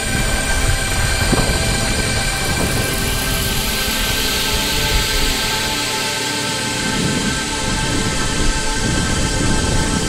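Background music of sustained, held notes over a steady rushing noise.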